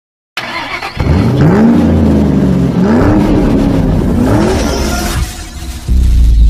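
Car engine revving hard three times as an intro sound effect, each rev climbing in pitch and then easing off; the sound dies away about a second before the end.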